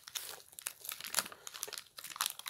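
A plastic, foil-lined chocolate bar wrapper crinkling and crackling in irregular bursts as hands pull it open.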